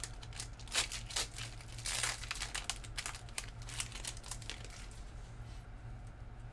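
A foil Panini Prizm trading-card pack wrapper crinkling as it is opened and handled. A run of sharp crackles fills the first few seconds, then dies down.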